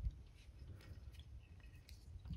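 Faint handling sounds of fly tying: a soft knock at the start, then scattered small clicks and ticks as fine copper wire is wrapped in open spirals up a nymph's body at the vise.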